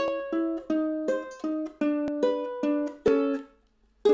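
Ortega ukulele fingerpicked with thumb and index finger: a blues phrase of about a dozen plucked two-note pairs, each left to ring, dying away shortly before the end, with a fresh chord struck right at the close.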